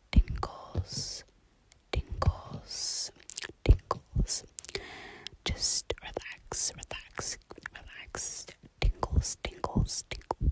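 A person whispering close to the microphone, with breathy hisses broken up by many sharp clicks and a few low thumps in an irregular rhythm.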